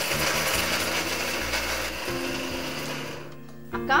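Electric mixer grinder running with a small stainless steel jar held down by hand, then switched off a little over three seconds in.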